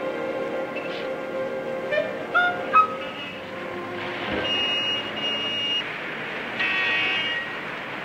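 Orchestral film-score music carries a scene change. Street traffic noise, with a brief high toot, rises under it in the middle.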